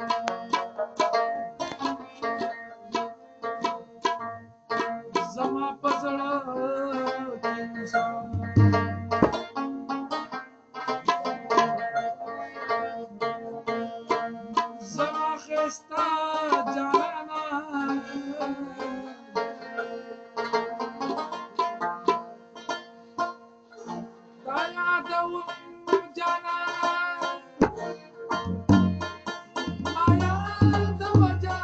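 Rabab, the Afghan short-necked lute, played as a fast run of plucked melody notes over steady ringing drone tones, with a few low thumps about nine seconds in and again near the end.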